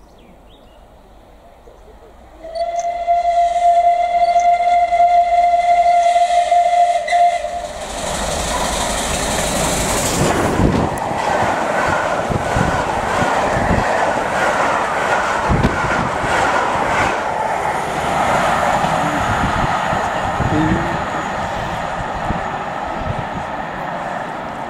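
Steam locomotive 35028 Clan Line, a Southern Railway Merchant Navy class Pacific, sounds one long steady whistle of about five seconds. It then passes at speed with a loud rush and the rhythmic clatter of its coaches' wheels over the rail joints.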